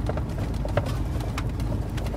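Steady low rumble of a Ford Super Duty pickup's engine and road noise heard inside the cab while driving, with a few faint clicks.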